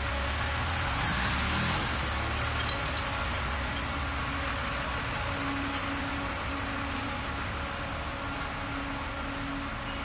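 Street ambience with an unseen motor vehicle's engine rumbling low for the first few seconds, then fading away about halfway through, leaving a steady background hiss and a faint hum.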